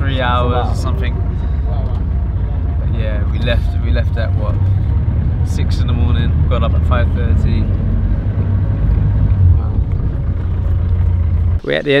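Vehicle cabin noise on a rough dirt road: a loud, steady low engine and road rumble, with voices talking over it. The rumble stops abruptly near the end.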